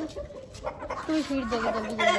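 Chickens clucking, with a voice drawn out in the second half.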